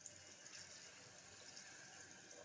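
Water being poured from a vessel into a pressure cooker onto a thick bean-and-tomato curry, a faint steady splashing.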